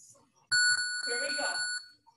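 An electronic chime or beep: one steady, bell-like tone held for about a second and a quarter, then cut off sharply, with a faint voice under it.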